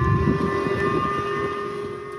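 Public warning siren sounding a ballistic-missile alert: a steady, unwavering siren tone over a low background rumble.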